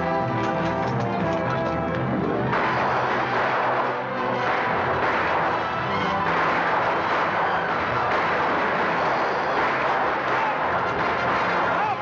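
Orchestral film score. About two and a half seconds in it is joined by a dense, continuous battle din of gunshots and galloping horses.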